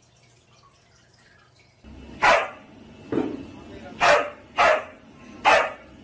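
A dog, a husky, barking five times at uneven intervals: short, sharp barks, the second one lower than the rest.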